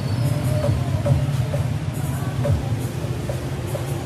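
A tricycle's motorcycle engine idling close by, a steady low rumble with a rapid flutter.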